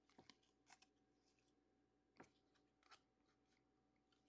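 Near silence, with a few faint clicks of chrome trading cards being flipped through by hand.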